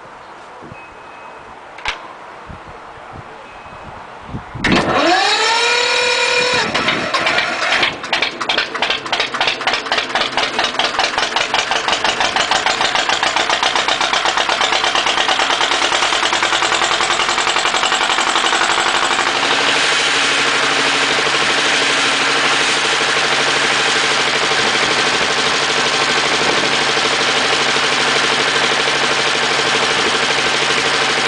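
1957 Lister FR2 two-cylinder diesel engine cranked on its 12-volt electric starter, the starter's whine rising for about two seconds, then the engine catching and firing unevenly before settling into a steady run. A single click sounds a couple of seconds before the cranking.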